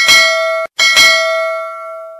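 Notification-bell sound effect of a subscribe-button animation, struck twice: the first ding is cut off after about half a second, and the second rings on and slowly fades out.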